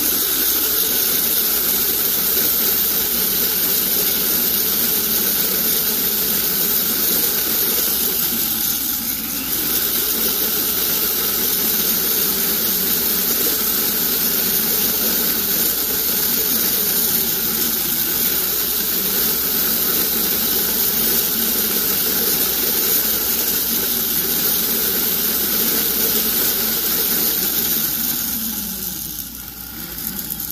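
Rotary tool spinning a silicone rubber wheel against a sterling silver bezel, trimming and smoothing its serrated edge: a steady high whine with hiss, dipping briefly about nine seconds in and winding down near the end.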